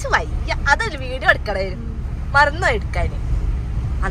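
People talking over the steady low rumble of a road vehicle.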